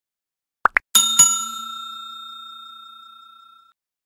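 Subscribe-button animation sound effects: two quick clicks, then a bell ding struck twice in quick succession that rings and fades away over about two and a half seconds.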